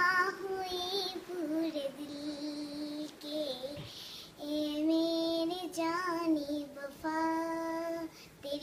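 A child singing a Hindi song alone, without instruments, holding long notes and sliding between them.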